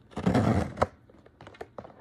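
Cardboard blind box being torn open by its pull tab: a tearing rip of a little under a second that ends in a sharp snap, followed by a few light clicks.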